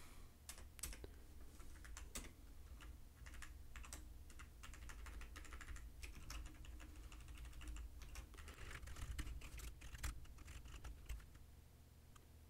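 Computer keyboard typing: a faint, irregular run of key clicks while code is entered and edited.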